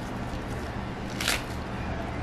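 Iceberg lettuce being handled and laid on a bun: one short crisp rustle of the leaf a little past a second in, over a low steady background hum.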